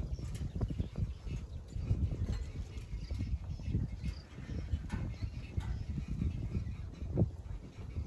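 Wind buffeting the microphone in uneven gusts, with scattered small clicks and knocks over it.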